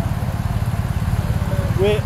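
Vehicle engine idling: a steady low rumble with a fast, even pulse. A man starts to speak near the end.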